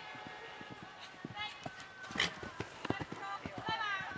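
A horse's hooves striking the sand arena at a canter, a run of irregular thuds through the second half, the loudest a little after two seconds in. Faint voices can be heard in the background.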